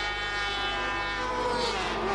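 Racing sidecar outfit's two-stroke engine running at a steady, even note, its pitch sinking in the second half as the machine slows. The outfit is smoking and cruising back to the pits: a mechanical retirement.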